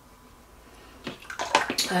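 A paintbrush being swished and rinsed in a pot of water: a short run of splashy sounds that starts about a second in and grows louder.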